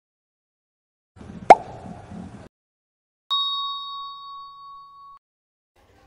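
Sound effects from an animated channel intro: a short sharp pop about a second and a half in, then a single bell-like ding that rings on one steady tone for about two seconds.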